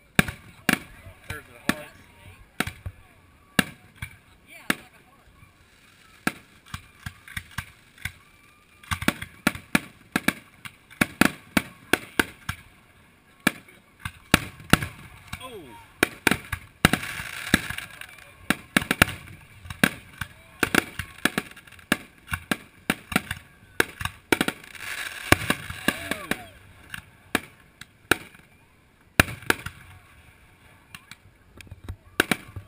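Aerial fireworks display: shells bursting in rapid, irregular succession, dozens of sharp bangs through the whole stretch. Twice, a little past halfway and again later, the reports crowd together into a dense crackle.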